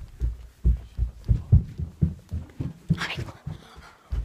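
Rapid, irregular low thumps, several a second, from a handheld phone being jostled and bumped as it is carried along, with a brief rustle about three seconds in.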